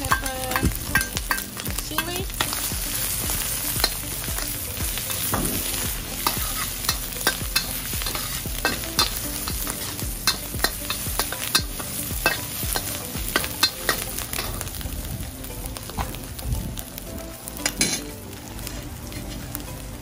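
Crushed garlic, Thai chili and black pepper sizzling in hot oil in a wok, stirred with a metal spatula that scrapes and clicks against the pan. The spatula clicks come thick and fast at first and thin out toward the end.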